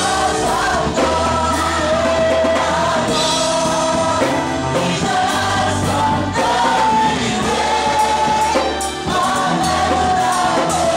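Gospel choir singing live into microphones, lead voices over sustained choir harmony, with a low bass underneath.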